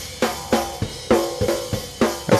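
Recorded snare drum track playing solo through a software EQ boosted around 300 Hz with its non-linear setting on, hits coming about three a second. The boost is starting to sound bad.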